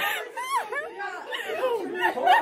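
A small group of people laughing and chattering.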